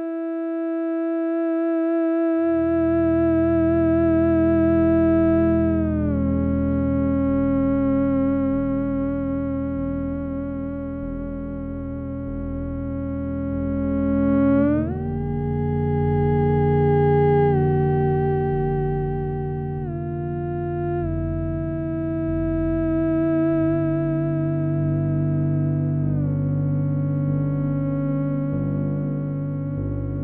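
Theremin playing a slow, expressive melody of long held notes that slide smoothly from one pitch to the next. About two seconds in, a low sustained accompaniment from a prerecorded backing track comes in underneath.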